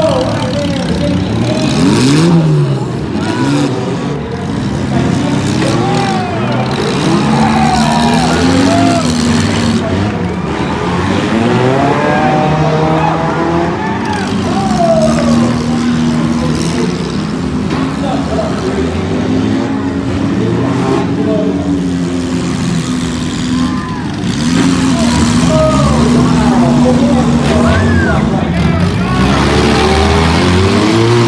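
Demolition-derby cars' engines running and revving together, many at once, with pitches rising and falling throughout.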